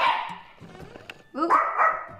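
A pet dog barks once, a single sharp bark right at the start that quickly fades.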